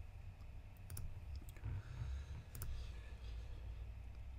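Computer mouse clicking: two quick pairs of clicks about a second and a half apart, over a low steady room hum.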